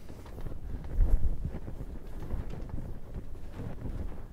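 A chalkboard being wiped with a felt eraser: continuous rubbing and scrubbing, with a heavier low thud about a second in.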